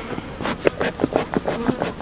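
Honey bees buzzing around an open hive close to the microphone, in short passes, with a quick run of light clicks and taps.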